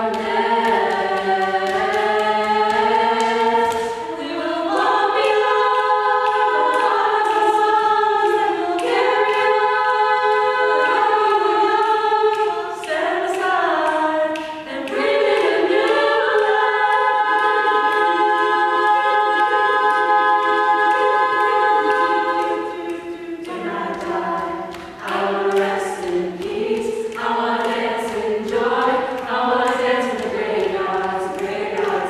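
A small a cappella group singing in close harmony, with no instruments. A long held chord breaks off about two-thirds of the way through, and a new phrase begins.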